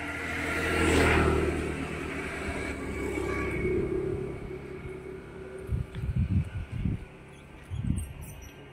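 A motor vehicle passing: its engine hum swells to its loudest about a second in, then fades over the next few seconds. A few low rumbling thumps follow near the end.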